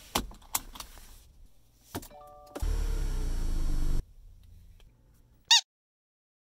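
A car seat belt being buckled, with a few sharp latch clicks, then a short stepped tone and about a second and a half of a steady motor sound in the car that stops abruptly. Near the end comes one brief high chirp.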